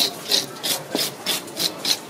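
Toothed metal fish scaler scraping the scales off a lizardfish in quick, regular rasping strokes, about three to four a second.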